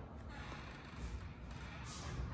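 Quiet room tone with a faint low rumble of handling and movement noise as the handheld camera is carried and swung around.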